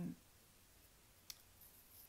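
Near silence: room tone, broken by one short click a little past halfway.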